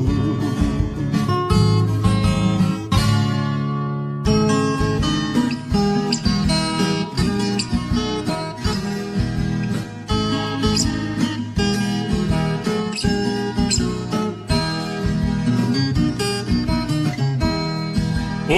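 Instrumental sertanejo raiz music led by plucked acoustic guitar with bass, no singing. The music breaks off briefly about four seconds in, and a new plucked-guitar passage starts.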